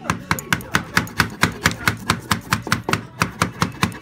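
Rapid light tapping, about six taps a second, as a piece of glass is tapped home into the lead came of a stained glass panel.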